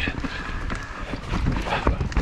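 Mountain bike clattering down a rough dirt trail: irregular knocks and rattles from the wheels, chain and frame over roots and rocks, over a steady low rumble.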